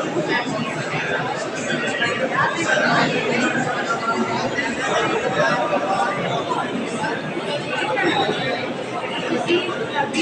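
Many people talking at once, a steady babble of overlapping voices with no single voice standing out.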